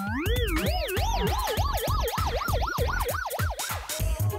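A warbling, siren-like electronic tone over background music with a steady beat. The tone wobbles up and down faster and faster as its pitch climbs, then cuts off near the end.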